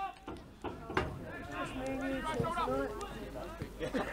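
Footballers and spectators calling out across an open pitch, including one longer held shout in the middle, with one sharp knock about a second in.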